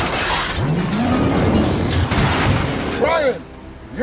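Film sound effects of a vehicle explosion dying away: a loud rumble with debris and breaking glass clattering. A low engine-like note rises and falls under it, and it ends in a brief voice-like cry at about three seconds.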